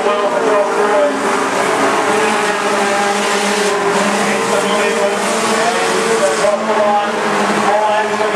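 Junior sedan race cars racing on a dirt speedway, several small engines revving and easing off in wavering pitch as the pack goes through a turn.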